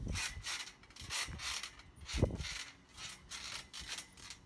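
Trampoline springs squeaking and rubbing in an uneven run of about three strokes a second as someone moves on the mat, with a few soft thuds, the strongest just past halfway.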